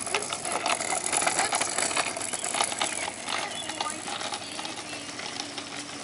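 Small kick scooter's wheels rolling over asphalt, with a running rattle of clicks that is loudest in the first half and fades as the scooter moves away.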